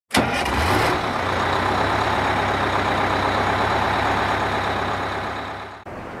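A large vehicle's engine starts with a loud burst, then runs steadily until it cuts off abruptly near the end.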